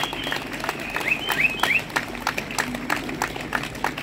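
Applause from a small crowd: scattered, irregular hand claps.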